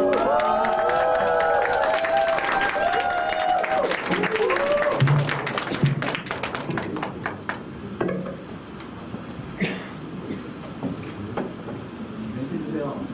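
Audience clapping and whooping at the end of a live rock band's song, the applause thinning out after about six seconds.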